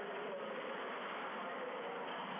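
Steady hiss of room and recording noise with a faint wavering hum underneath.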